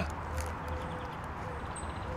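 Quiet outdoor park ambience: a steady low rumble with faint bird calls, including a brief high chirp near the end.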